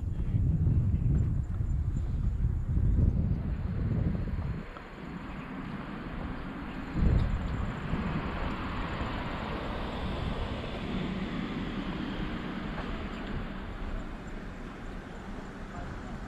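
Wind buffeting the microphone in low rumbling gusts for the first few seconds, then a steadier rushing of wind, with a single thump about seven seconds in.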